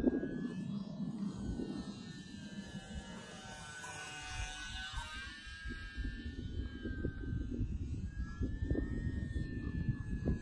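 Hobbyzone Champ S+ RC plane's small electric motor and propeller whining as it flies overhead, growing louder about four seconds in and then fading, its pitch wavering slightly. Wind rumble on the microphone underneath.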